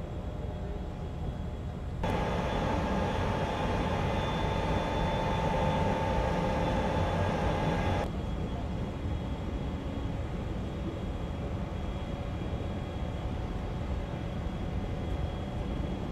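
Steady low rumble of ship machinery alongside a pier. From about two seconds in to eight seconds a louder stretch with a steady, many-toned hum starts and stops abruptly.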